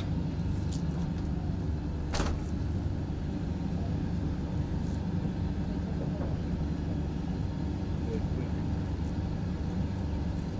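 Steady low engine rumble that runs without a break, with one brief sharp noise about two seconds in.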